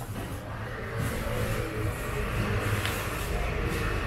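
Steady background rumble and hiss, typical of traffic or a busy market, growing slightly louder about a second in.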